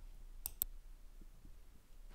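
A pause with faint room tone and two short, sharp clicks in quick succession about half a second in.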